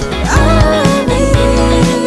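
Indie pop song: a sung line over a steady drum beat and backing instruments, the voice sliding up into a held note about a third of a second in.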